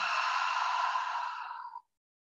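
A yoga instructor's long, deliberate exhale through the mouth, a steady breathy hiss that tapers off and stops shortly before the end. It is the out-breath of a guided cleansing breath.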